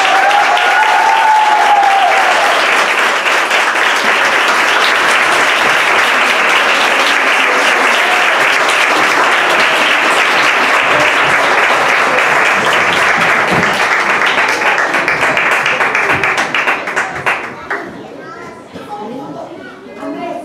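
Audience applauding loudly and steadily, the clapping dying away about two to three seconds before the end.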